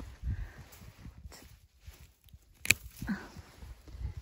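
Pruning shears snipping through a hydrangea twig: one sharp click a little under three seconds in, amid low rustling and handling noise in the snow.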